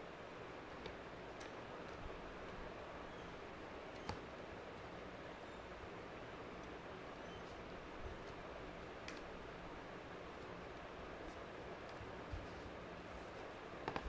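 Faint clicks and light handling noise of small plastic stationery items being packed into a clear plastic case, a few scattered taps with the clearest about four seconds in, over a steady low hiss.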